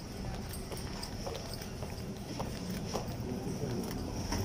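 Footsteps clicking on paved ground during a walk, over a steady low rumble of street and market noise.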